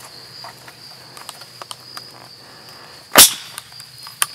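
Crickets chirping in a steady high drone, with a few light clicks of hands on the plastic trail camera and one sharp, loud click about three seconds in.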